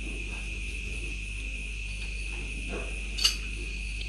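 Steady high-pitched chirring of insects, with a low hum beneath. A single sharp click comes about three seconds in.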